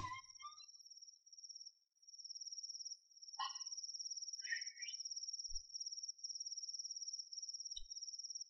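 Faint, steady high-pitched trilling of crickets, night-time ambience. A couple of soft rustles come in the middle, and two dull low knocks follow later.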